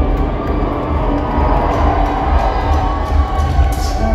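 Metalcore band playing live at full volume, with drums and bass heavy in the low end, and a crowd cheering along.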